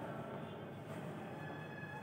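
Faint scratching of chalk on a blackboard as a word is written, over a low steady room hiss.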